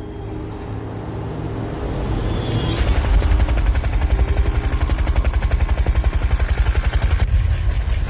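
Helicopter flying low and close, its rotor blades chopping in a fast, even beat that swells loud about three seconds in. Before that, a car engine is heard running.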